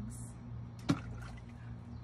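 A toy dinosaur egg dropped into a clear plastic tub of water: a single sharp splash about a second in.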